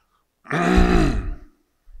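A man clears his throat with one loud, voiced, grunting sound lasting about a second, starting about half a second in.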